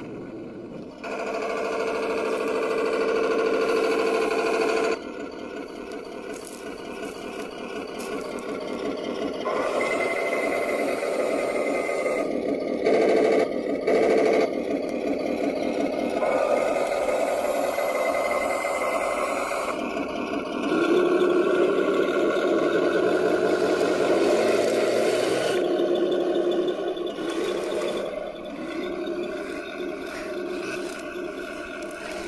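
1:16 RC King Tiger tank with metal tracks and metal gearbox driving over forest ground: a steady mechanical running sound, with the model's onboard sound unit playing simulated engine noise that steps up and down in level as it drives and stops.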